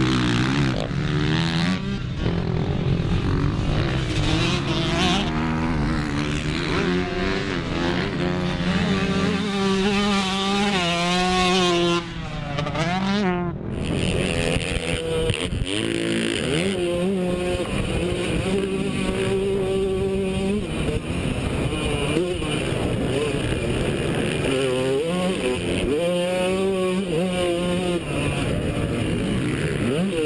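Motocross dirt bike engine revving as it is ridden, its pitch rising and falling again and again with the throttle and gear changes. About halfway through the sound changes from a trackside recording to a close recording from a camera on the rider's helmet.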